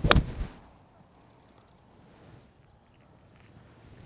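Golf iron striking a ball off the tee: one sharp crack right at the start, with a short trailing tail.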